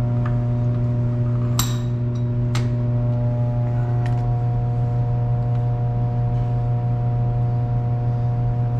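A loud, steady machine hum runs throughout, with a few light metallic clinks in the first half as steel parts are handled on the vise, the first one ringing briefly.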